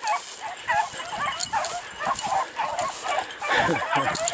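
A pack of beagles baying as they run a rabbit on its scent trail. Many short, overlapping yelping bays come several times a second.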